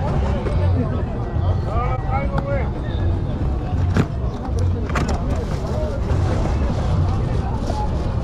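A cardboard toy box being opened and handled, with two sharp clicks about halfway through, over nearby voices and a steady low rumble.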